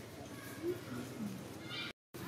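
A young long-tailed macaque gives a short high-pitched squeak near the end, over faint low calls in the outdoor background.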